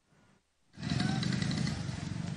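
Dead silence at an edit, then about three-quarters of a second in, steady outdoor background noise with a low rumble starts and holds.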